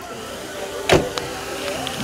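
A single sharp knock about halfway through, over steady outdoor background noise and a faint hum.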